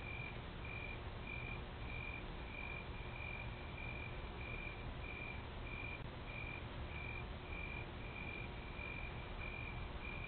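Faint electronic beeping, one short high beep repeating evenly a little under twice a second, over steady hiss and a low hum, as picked up by a home security camera's microphone.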